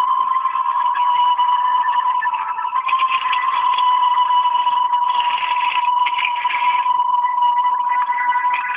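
A steady, high-pitched electronic tone held throughout, with fainter higher tones and a rough, noisy texture above it.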